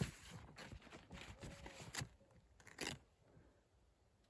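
Faint, irregular rustling and scraping in short bursts, with sharper scrapes about two seconds in and again just before three seconds, then quiet.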